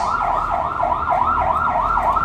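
An electronic siren in a fast yelp: a loud tone sweeping up and down about four times a second.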